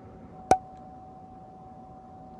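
A single sharp click about half a second in, over a steady thin tone and faint hiss.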